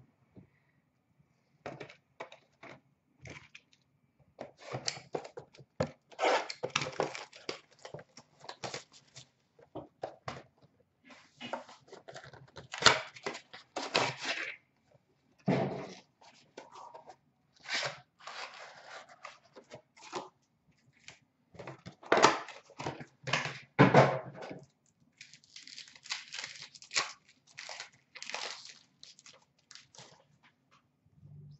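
Packaging being torn open and handled as hockey card blaster boxes and packs are opened: crinkling and tearing of pack wrappers and cardboard, plus cards being shuffled. The sounds come in irregular bursts of crackling, loudest around the middle.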